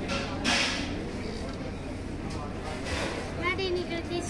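Indistinct voices in a room over a steady low hum, with a short burst of noise at the start and a brief spoken sound near the end.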